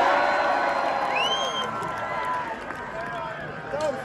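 Large outdoor concert crowd cheering and shouting between songs. It is loudest at the start and slowly dies down, with a high rising whistle from the crowd about a second in.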